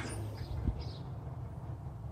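A steady low hum with a faint click a little under a second in.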